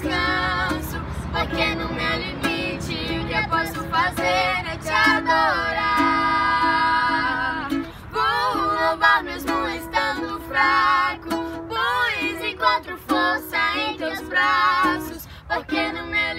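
A young girl and a young woman singing a Portuguese worship song together, with a ukulele strummed along. The voices hold one long note for a few seconds near the middle.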